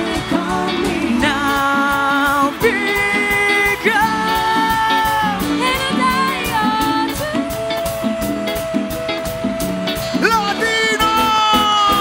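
Live dance band music with no words: long held melodic notes over a fast, dense Latin percussion beat, a two-headed tambora-style drum struck with a stick and rapid high ticking percussion driving it.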